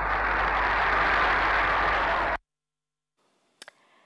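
Old archival film soundtrack: an even rushing noise with a low hum underneath. It cuts off suddenly about two and a half seconds in, leaving near silence with a couple of faint clicks.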